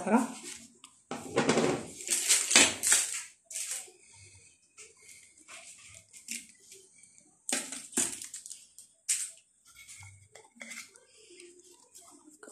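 Clinks and scrapes of small fluted metal tart tins and baking utensils being handled on parchment paper while sablé dough is cut and pressed into the tins, with a few sharper clinks in the second half.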